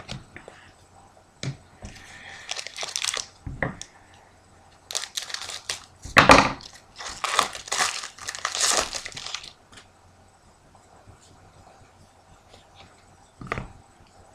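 A foil trading-card pack wrapper being torn open and crinkled by hand, in irregular bursts over several seconds, then one short crinkle near the end.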